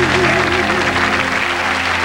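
Studio audience applauding as the orchestra's final held chord rings out and fades at the close of a slow jazz ballad.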